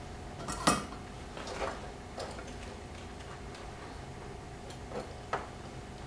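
A soldering iron set down into its metal coil stand with a sharp clink about a second in, followed by a few fainter clicks as wires are handled.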